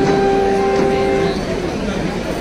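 Music from a small plucked string instrument: one steady held note with its octave above, which stops about one and a half seconds in, over a low murmur of voices.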